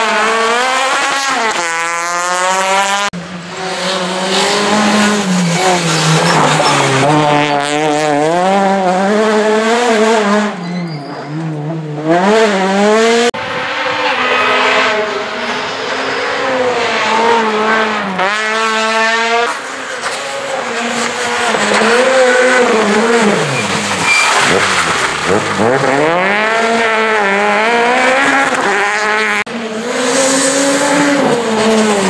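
Small rally cars passing one after another in cut-together clips, each engine revving up and falling back repeatedly through gear changes and corners. Citroën C2 rally cars through most of it, and a Peugeot 208 rally car in the last moment.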